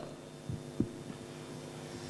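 Steady electrical hum from the hall's sound system, with two soft low thumps about half a second and just under a second in, typical of a handheld microphone being shifted in the hand.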